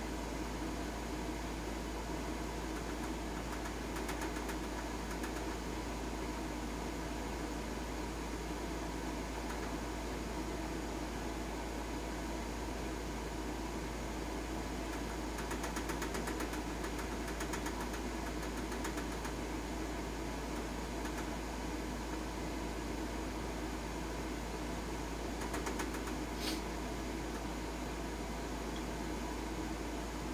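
Steady background hum and hiss, with a few faint ticks and one brief click near the end.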